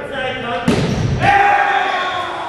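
A volleyball hits the hardwood gym floor with one sharp bang about two-thirds of a second in, ending the rally. Players shout right after it.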